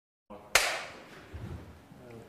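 A single sharp clap about half a second in, ringing off briefly after it, as the sound track of a take cuts in.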